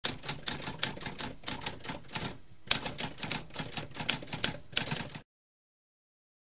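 Typewriter keys typing rapidly, several sharp strokes a second. There is a brief pause about halfway through, then a harder stroke and more typing, which stops abruptly near the end.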